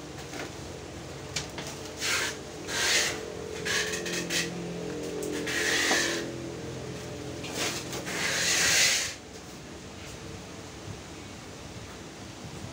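Bubble wrap and plastic packaging rustling and rubbing in a string of short bursts as guitars are handled in their packing, the loudest near the end.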